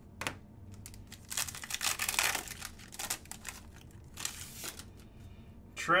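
A trading-card pack's wrapper crinkling and tearing as the pack is opened: a sharp click at the start, then a long crackly burst of about two seconds and a shorter one near the end.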